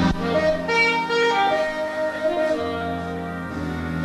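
Jazz big band playing a slow ballad live, with sustained chords and melody notes held over one another. A single sharp drum hit comes right at the start.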